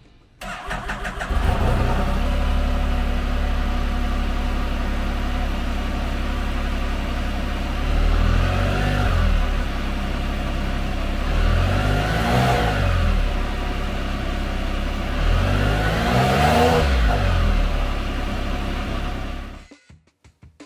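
A 2021 Can-Am Spyder RT Limited's 1330cc Rotax inline three-cylinder engine is cranked on the starter and catches within about a second, then idles around 1,350 rpm. It is revved three times, a few seconds apart, the later two higher, and is switched off just before the end.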